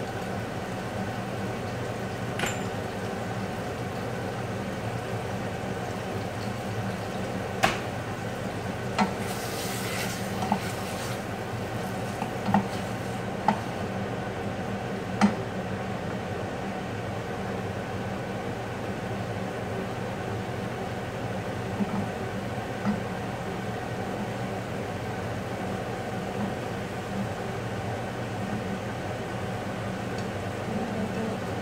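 Steady mechanical kitchen hum with a few sharp clinks of utensils against cookware and a brief hiss in the first half.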